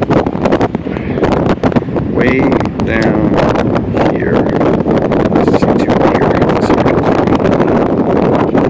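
Strong wind buffeting the microphone: a loud, steady rush broken by frequent rumbling crackles.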